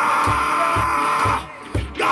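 Live music: a harmonica holding a chord over a steady low drum beat of a little over two thumps a second. The harmonica breaks off about a second and a half in while the beat carries on.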